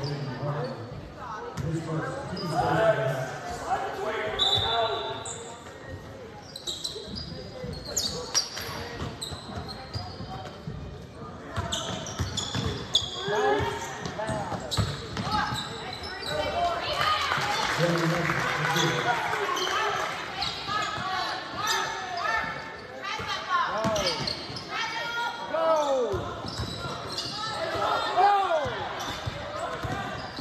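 A basketball bouncing on a hardwood gym floor, with sneakers squeaking in short bursts near the end, amid echoing voices of players and spectators in a large gym.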